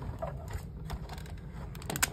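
Hand-cranked Stampin' Cut & Emboss machine rolling an embossing folder between its plates through the rollers: a steady low rumble with a few light clicks, a sharper click near the end.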